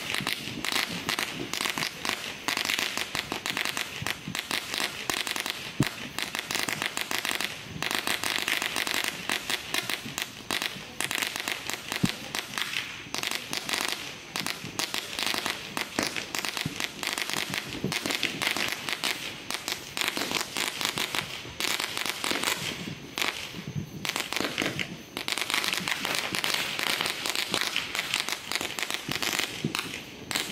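Firecrackers and fireworks going off across a neighbourhood: a continuous dense crackle of many small pops, with a few louder bangs about six and twelve seconds in.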